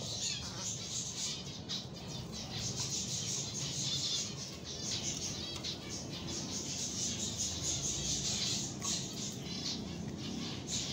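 A flock of zebra finches chirping continuously, a dense overlapping chatter of short, high calls.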